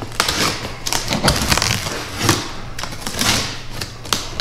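Utility knife slicing through the packing tape and cardboard of a shipping box: a run of short cutting strokes and clicks, with the cardboard crinkling.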